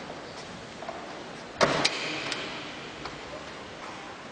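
A few sharp clicks or knocks over steady background noise. The loudest two come about a quarter-second apart, about halfway through, with fainter ticks before and after.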